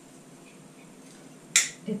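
A single sharp plastic click about one and a half seconds in, from the detachable parts of a 4-in-1 pedicure foot brush being worked apart in the hands; before it, only quiet room tone.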